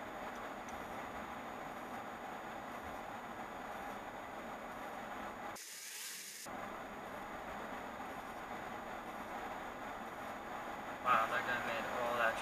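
Steady, even background noise inside a car stopped in traffic, picked up by a dash cam's microphone, with a brief break in the middle. A man's voice starts near the end.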